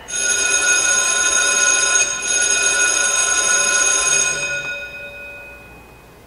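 A bell rings loudly and steadily with many high pitches sounding together, starts suddenly, then fades away after about four and a half seconds.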